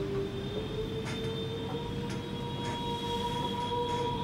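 Opening of a film trailer's soundtrack: one long held note with fainter higher overtones, stepping up slightly in pitch about half a second in.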